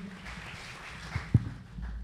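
Microphone handling noise: a steady hiss, a single knock a little over a second in, and a low rumble near the end as a handheld microphone is picked up.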